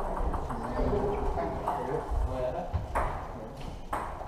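Table tennis balls clicking off bats and tables in a large hall, a few sharp ticks standing out near the end, over indistinct voices.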